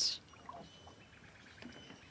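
Water splashing briefly as a rock weight is lifted out of a water-filled plastic cane toad tadpole trap, followed by faint drips and handling in the water.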